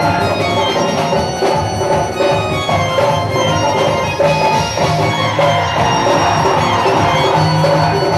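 Live Bhojpuri stage-show music from a band: melodic instruments over a steady drum beat, played loud and without a break.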